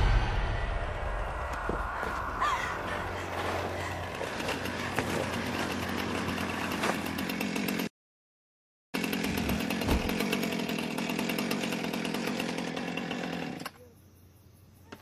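A chainsaw engine running in two stretches, each cut off suddenly: about eight seconds, a second of dead silence, then about five seconds more.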